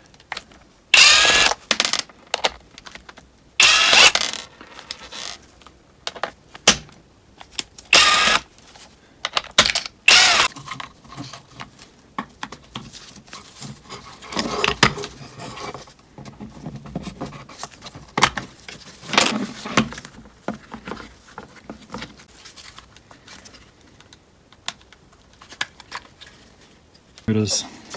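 Cordless driver whirring in four short bursts, backing out the four Torx screws that hold the door lock actuator housing together. After that come quieter plastic clicks and rattles as the housing is handled and pulled apart.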